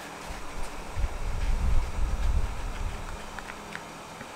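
A low, uneven rumble, then a few faint snips near the end as small scissors cut into a leathery ball python eggshell.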